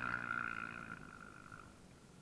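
An off-road racing engine running hard, its steady tone fading away over about a second and a half as the machine moves off down the dirt track.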